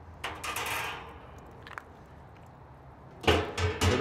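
Metal cooking grate set down into a steel drum smoker with a click and a brief scrape. Near the end come three or four loud metal clanks from the drum's lid being handled.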